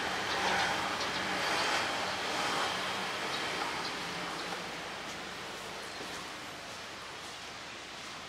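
Outdoor ambience: a steady hiss of distant road traffic that slowly grows quieter.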